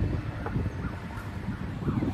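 Wind buffeting the microphone as an uneven low rumble, with a few faint bird calls.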